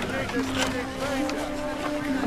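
Film soundtrack mix: background voices of a crowd under a held low musical note, with a few light knocks and clicks.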